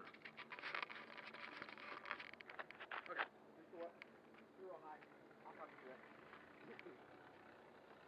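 Crunching and crackling of footsteps on gravel close to a ground-level microphone for about three seconds, then faint distant voices.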